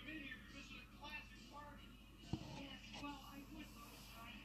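Faint background speech and music, with one sharp click a little past halfway through.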